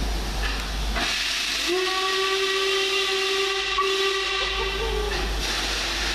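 Steam locomotive 46233 Duchess of Sutherland, an LMS Princess Coronation Class Pacific, sounding one long whistle blast of about three and a half seconds at a single steady pitch. A burst of steam hiss begins shortly before the whistle.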